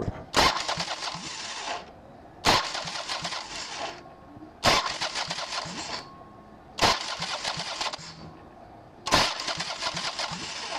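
A Spike high-torque starter on a Harley Electra Glide cranks the engine over five times in short bursts of about a second and a half, each beginning with a sharp clunk as it engages. The primary cover is off, so its pinion drives the clutch-basket ring gear in the open.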